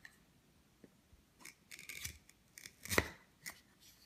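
Wooden toy knife rubbing and knocking against a wooden play-food loaf as a toddler saws at it: scattered soft scrapes and ticks, then a sharper click about three seconds in as the slice comes apart.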